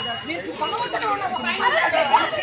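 Several people talking at once, their voices overlapping.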